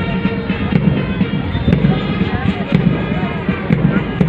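Band music with many held brass-like notes, over a loud, uneven low thumping and rumble.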